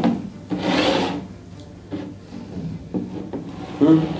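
Drinking glasses slid and shuffled across a table top: a rasping scrape about a second long soon after the start, with a knock of glass set down at the start and another near the end.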